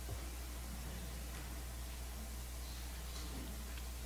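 Quiet room tone: a steady low hum and faint hiss with no distinct sounds.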